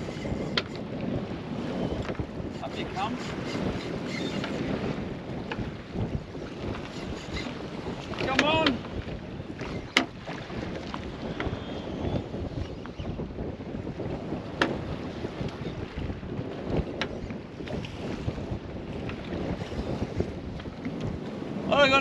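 Wind buffeting the microphone over choppy sea and waves slapping a small boat's hull, a steady rushing noise. There is a short vocal sound about eight and a half seconds in and a few sharp clicks.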